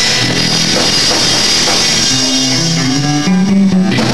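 Live punk rock band playing: electric guitar and bass over a drum kit, the bass line stepping between notes. Near the end the cymbals drop out and a single low note is held.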